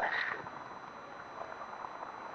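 A pause in a man's talk: the end of his drawn-out 'uh' right at the start, then faint, steady room noise with no distinct event.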